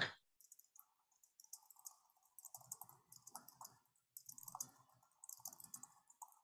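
Fast typing on a computer keyboard, a dense run of faint keystroke clicks, with one sharper click right at the start.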